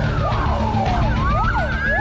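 Fire truck siren: a slow wail that falls over about a second and then climbs back up, with quicker up-and-down sweeps running alongside it.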